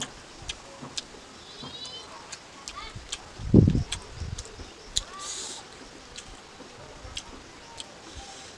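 Close-miked mouth sounds of eating rice and pickle by hand: a scatter of small wet clicks and lip smacks of chewing, with a short low sound about three and a half seconds in.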